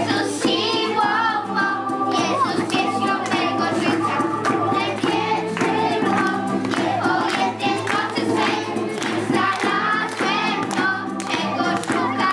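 A group of children singing a song together, accompanied by acoustic guitar and bass guitar.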